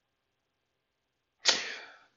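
Near silence, then about one and a half seconds in a sudden, sharp intake of breath that fades over about half a second.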